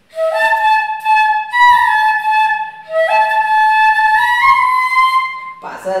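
Six-pitch bamboo Carnatic flute played solo with a breathy tone: two similar phrases, each opening with a quick upward slide and then climbing note by note. A voice starts just before the end.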